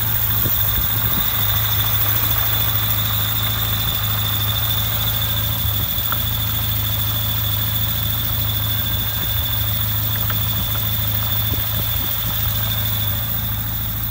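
Citroën C4 1.6-litre petrol four-cylinder engine idling steadily under the open bonnet, with a constant high-pitched whine over the engine's low hum.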